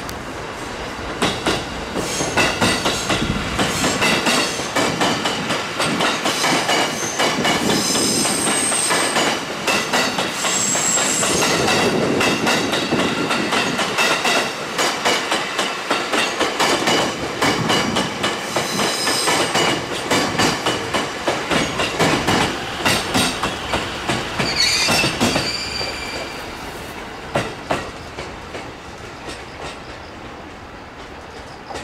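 JR East E257 series 5000-subseries electric train passing close by, its wheels clicking rapidly over the rail joints with brief high squeals now and then. The noise falls away over the last few seconds as it moves off.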